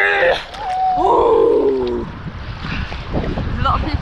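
A woman's voice making drawn-out, wordless exclamations for the first two seconds, then seawater sloshing and lapping close to the microphone, with a low rumble of wind on the microphone.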